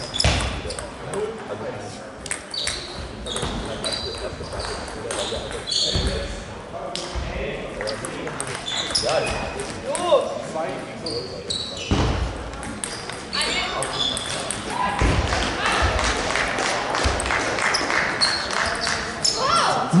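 Table tennis balls clicking off bats and tables in a large, echoing sports hall: an irregular patter of short, high ticks from the rally at this table and from play at other tables. Voices carry in the hall.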